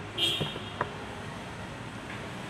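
Steady hum of street traffic, with a brief high-pitched squeak near the start and two light clicks within the first second.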